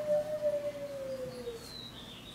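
A wolf howling once: a single long, clear note held fairly steady that slides lower in pitch before it fades out about one and a half seconds in.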